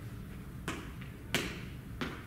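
Two sneaker footfalls landing during high-knee A skips, the second louder, over a low steady room hum.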